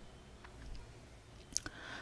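A pause between sentences: faint room tone with a few soft mouth clicks, and a short breath near the end.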